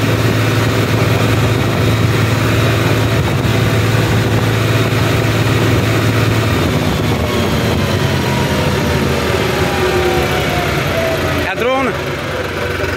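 New Holland 3630 tractor's three-cylinder diesel engine running at full road speed, under an even hiss of wind and road noise. In the second half the engine pitch falls as the tractor slows.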